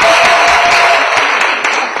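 Audience applauding, the clapping thinning out and dying away toward the end.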